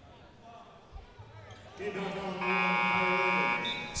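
Arena horn at the scorer's table sounding one steady, loud blast of about two seconds, starting about halfway through, during a stoppage of play after a foul. Before it, faint crowd and court noise of the arena.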